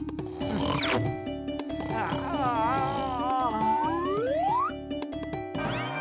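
Comic cartoon background music with a steady pulsing beat and playful sliding-pitch effects, including a wobbling tone in the middle and a long rising glide about four seconds in.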